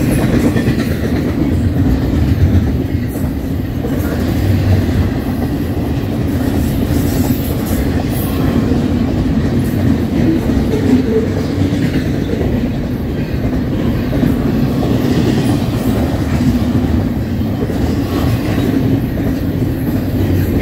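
Double-stack intermodal container train passing: a steady rumble and rattle of the well cars and their wheels running over the rails, with no horn.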